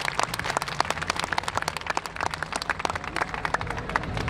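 Audience applauding: many quick, irregular hand claps.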